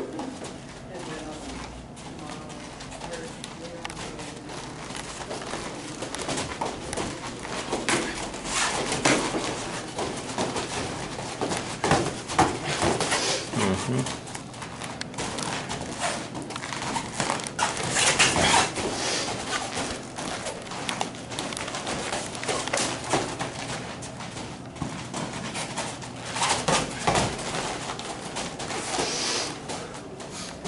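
Light-contact kung fu sparring between two fighters on padded mats: feet shuffling and scuffing, sharp breaths pushed out with the strikes, and light hits. The loudest bursts come about 12, 18 and 27 seconds in.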